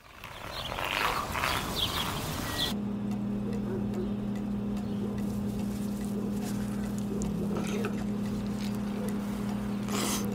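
Voices over outdoor noise fading in, then from about three seconds in a motor running steadily at one unchanging pitch, with a soft noisy bed beneath it.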